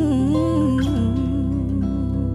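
Acoustic soul ballad music: a woman's voice holds one long sung note with a wavering vibrato over acoustic guitar and a steady low accompaniment.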